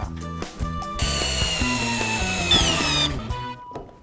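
Cordless drill boring into a block of timber for about two seconds, its whine dropping in pitch partway through.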